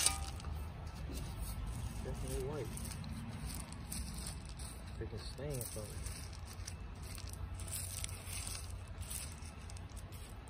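White landscape pebbles being spread and levelled by hand, rattling and scraping against each other in quick, uneven bursts. A sharp click right at the start.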